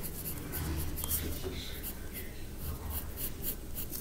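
Pencil lead scratching on paper in a run of short sketching strokes.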